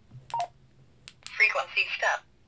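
Baofeng UV-5R handheld radio giving a short key beep about half a second in as a menu key is pressed, then a click, then the radio's own voice prompt from its small speaker announcing the menu item near the end.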